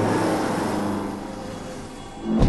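A bus passing close by: a rush of engine and road noise that is loudest at first and fades away over the two seconds.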